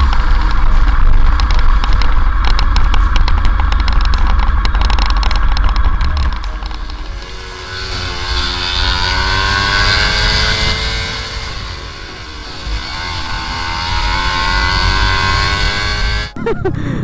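Sport motorcycle riding at speed, heard from a helmet camera. A heavy low rumble fills roughly the first six seconds. After that the engine note climbs, drops back and climbs again, as the throttle is worked.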